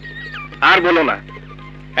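Film soundtrack: a short run of falling stepped music notes, then one loud, brief vocal cry with a bending pitch about half a second in, over a steady low hum.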